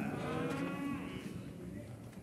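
A faint drawn-out hummed or moaned 'mmm' from a voice in the hall, about a second long and wavering in pitch, then fading to room tone.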